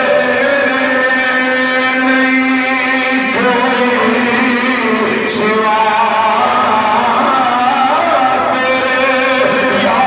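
Men's voices chanting a slow, drawn-out melody, each note held for several seconds before moving to the next.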